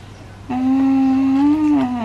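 A woman humming one held note for about a second and a half, lifting slightly in pitch before falling away at the end.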